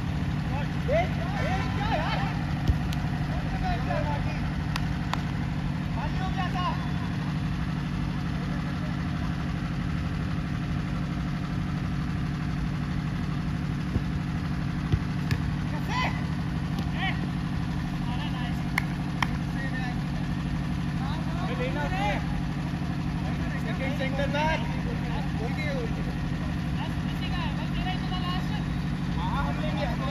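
Ball kicked on a football pitch, a few sharp thuds spread out, with one as a shot at goal about halfway through, and players' distant shouts. A steady low hum runs underneath.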